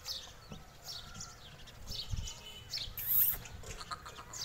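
Birds chirping in short, high, falling calls, about one every second. A brief loud hiss comes about three seconds in, and a low thud a little before it.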